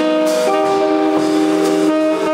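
Live jazz quartet playing: saxophone holding one long note from about half a second in, over archtop guitar, upright bass and drums.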